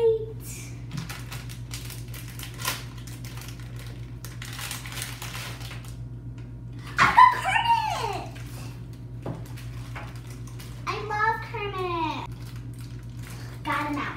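A foil blind bag being torn and crinkled open by hand, a dense crackling rustle with many small crackles. Partway through, a child gives two excited exclamations, each sliding down in pitch. A steady low hum runs underneath.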